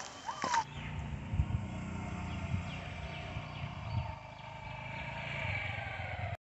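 Motor scooter's small engine running at a distance: a faint, steady low hum.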